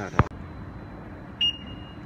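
Pedestrian crossing signal giving a steady high-pitched beep tone that starts about a second and a half in, over a low street hum.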